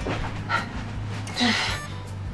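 A person breathing hard in a fluster, with a short breathy gasp about half a second in and a longer, louder one near the end, over background music.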